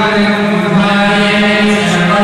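Male priests chanting Sanskrit mantras in a continuous, near-monotone recitation held on one steady pitch.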